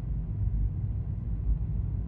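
Steady low road rumble of a vehicle driving along a paved highway, heard from inside the cabin: tyre and engine noise at cruising speed.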